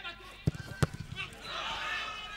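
A football kicked twice in quick succession, two sharp thuds about a third of a second apart, amid players' shouts. More shouting builds near the end.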